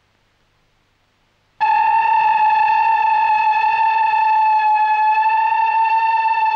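Near silence, then about a second and a half in, a loud electronic tone starts abruptly. It holds one unwavering note with a bright, buzzy edge, used as a musical sting in the film's soundtrack.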